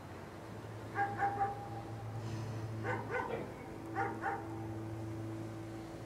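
Quiet, whimpering sobs from a woman crying in grief: three short, broken bursts of high, quavering breaths about two seconds apart. A steady low hum runs underneath.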